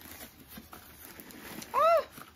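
Faint rustling of handled packaging, then near the end one short, high call that rises and falls in pitch, like a household pet's meow or whine.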